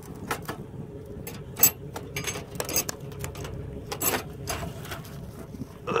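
Wire live-cage trap rattling and clinking irregularly in a series of sharp metallic clicks as its door is held open and a raccoon is let out.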